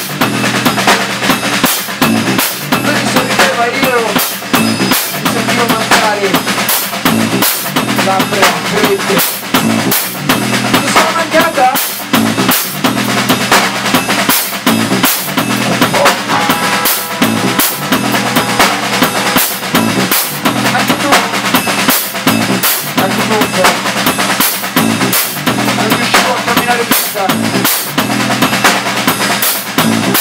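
Live math-rock band playing loud: a drum kit hit fast and hard, with kick, snare and cymbal strokes, over a bass guitar's sustained low notes.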